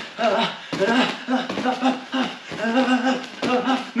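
A person's voice making short, pitched vocal bursts, about two a second, that are not words, during continuous shadowboxing punches and kicks.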